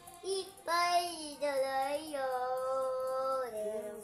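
A young child singing without clear words, sliding between notes and holding one long steady note through the middle.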